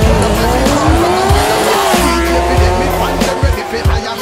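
Drag race car engine revving, its pitch rising over the first two seconds and then holding steady, heard over hip hop music with a beat.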